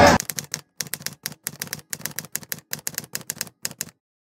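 Typing sound effect: a quick run of key clicks, about seven a second, that stops suddenly just before the end.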